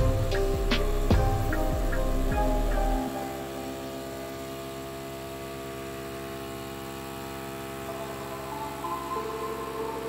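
Steady, layered humming tones, with a few sharp clicks in the first couple of seconds. The low hum drops away about three seconds in, and new higher tones come in near the end.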